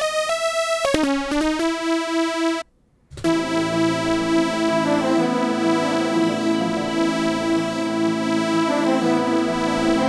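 A synthwave-style software synthesizer sounding one sustained note that slides up and down in pitch, stopping briefly about two and a half seconds in. It then comes back in, playing with the beat's sustained melody of layered keys and strings.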